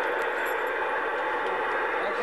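Steady hiss of radio static from the ham-radio receiver's speaker, an open channel with no signal after the contact has ended.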